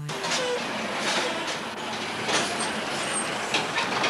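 A train running along railway track, with a steady rumble and occasional clanks of wheels and wagons.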